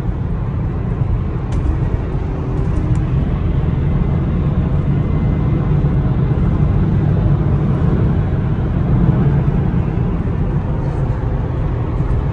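Road and engine noise inside a BMW 4 Series cabin at highway speed: a steady low rumble that grows a little louder through the middle.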